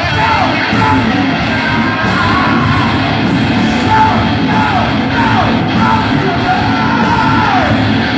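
A rock band playing live on stage, with electric guitars, drums and vocals, and repeated falling slides in pitch.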